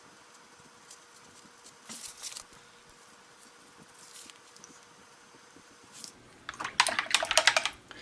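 Faint, sparse taps of a small paintbrush dabbing paint dots onto paper, then near the end a louder quick run of small clicks and rattles as tools are handled on the tabletop.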